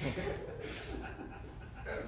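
A person's voice, faint and indistinct, making uneven breathy sounds without clear words.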